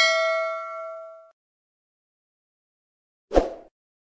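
Notification-bell sound effect of a subscribe-button animation: one bright bell ding that rings out and fades away over about a second and a half. A short, soft hit follows about three seconds in.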